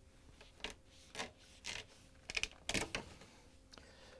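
Dishwasher tub-to-cabinet trim strip being pulled off the edge of the tub, heard as a handful of faint, irregular scrapes and soft clicks as it comes free down the side.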